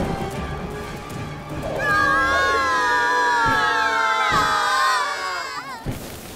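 Several children's voices crying out together in one long, wavering shout of about four seconds, starting about two seconds in and cutting off just before the end.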